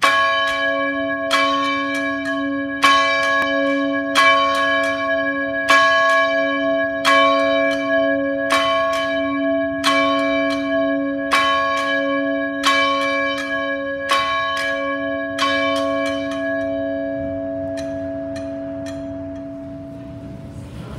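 Church bell ringing in a steady, even toll, struck about every second and a half for about a dozen strokes, its hum sustained between strokes. The strokes stop near the end and the ringing dies away.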